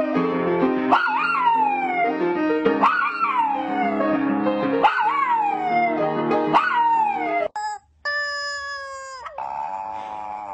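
A dog howling along with music: five howls about two seconds apart, each jumping up in pitch and then sliding down. After a short break near the end, a longer, steady howl ends in a slight drop, and a falling howl follows.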